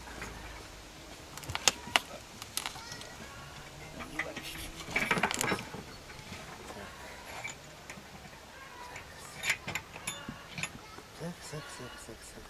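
A steel rod being bent and reset in a bench vise: scattered sharp metallic knocks and clinks, with a short rasping rattle about five seconds in.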